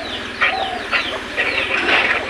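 Chickens clucking: a string of short, high calls.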